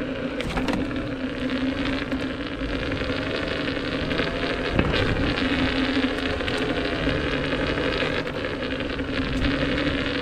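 Inmotion V10F electric unicycle rolling: steady tyre noise over asphalt and paving tiles, with the hub motor's faint whine gliding up and down in pitch as the speed changes. A single knock about five seconds in.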